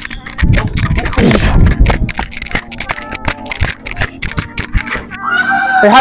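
Rubbing and knocking on a body-worn microphone, with hard breathing from a football player's drill exertion, over music. Speech starts near the end.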